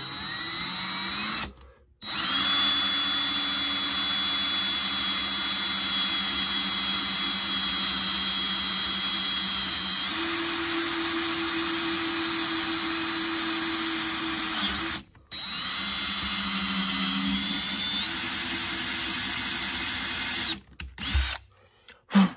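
Cordless drill boring through a metal bracket with a twist bit: the motor spins up with a rising whine, then runs in two longer stretches, about thirteen seconds and then about five seconds, with short pauses between. The whine's pitch steps up partway through the long run.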